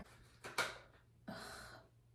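Quiet breathing: a short intake of breath with a faint click about half a second in, then a breathy, exasperated 'ugh' sigh.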